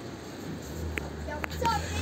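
Faint, scattered children's voices in the background of a playground, over a low steady hum, with two light clicks about a second in and near a second and a half.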